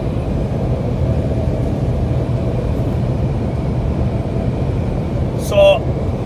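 Steady low road and engine noise heard from inside a vehicle's cabin while it cruises at highway speed.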